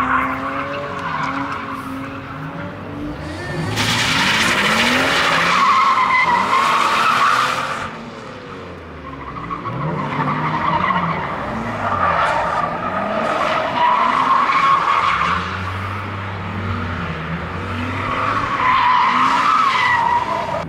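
BMW E36 being drifted: the engine revs rise and fall again and again while the rear tyres squeal and skid. The tyre noise is loudest from about four to eight seconds in, again a few seconds later, and near the end.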